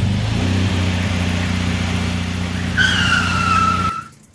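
Motor vehicle engine running steadily as it drives in. About three quarters of the way through, a high squeal that falls slightly in pitch as it skids to a stop; the sound then cuts off suddenly.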